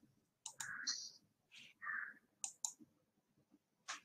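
Faint scattered clicks and short soft noises, with two quick sharp clicks close together a little past the middle.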